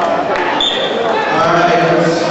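Spectators and coaches shouting and calling out over one another during a wrestling bout. The voices overlap, with a shrill held note or two among them.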